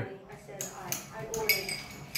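Quiet room with faint voices in the background and a few light, sharp clinks, the clearest about a second and a half in.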